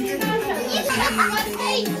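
Children's voices calling out and chattering while they play a party game, over background music.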